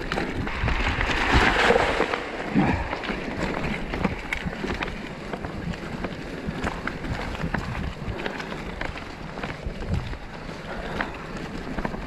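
Mountain bike riding over a loose gravel track: tyres crunching, with frequent small clicks and rattles from the bike and wind buffeting the microphone.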